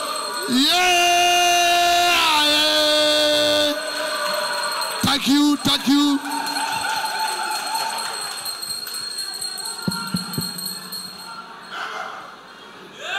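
A song with a long held sung note over backing music, which cuts off sharply a little under four seconds in. It gives way to a large hall's crowd noise, with a few short voices in the middle, fading toward the end.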